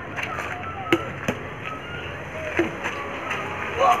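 Badminton rackets hitting a shuttlecock in an outdoor rally: a few sharp thwacks, the first about a second in, over faint background voices.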